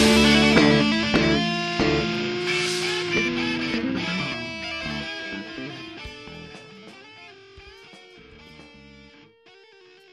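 Punk rock band's electric guitars and bass still playing as the recording fades out, with a few sharp hits in the first three seconds and the level sinking steadily toward near silence.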